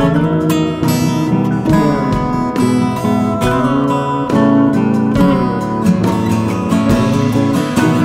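Instrumental break of a song, led by acoustic guitar picking and strumming at a steady, moderate level.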